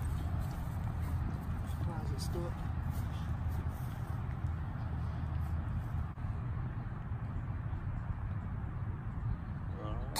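Steady low outdoor rumble, with faint distant voices about two seconds in.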